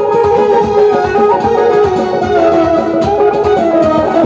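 Live Azerbaijani wedding-band music led by a synthesizer, its melody stepping slowly downward over a steady drum beat.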